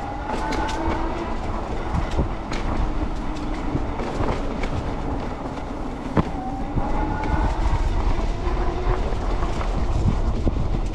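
Electric bike riding over a sidewalk: the hub motor's faint whine rises in pitch as it speeds up, twice, over a steady rumble of tyres and wind. Sharp clicks come as the tyres cross sidewalk joints, the loudest about six seconds in.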